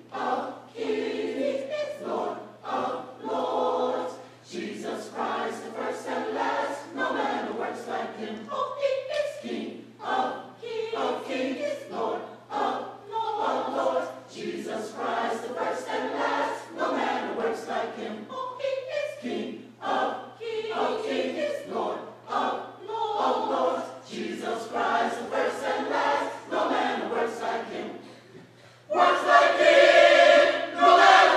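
Mixed-voice church choir singing a gospel song, with a steady low hum underneath. Near the end the singing drops away briefly, then comes back louder.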